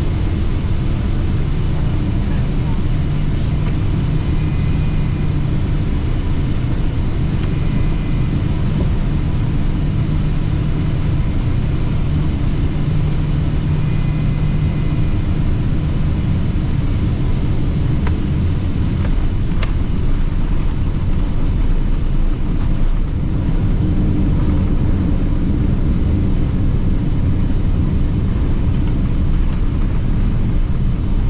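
Steady cabin noise of a twin-engine Boeing 777-200ER on final approach, engines and airflow running. About three-quarters of the way in the sound shifts as the airliner touches down and rolls along the runway.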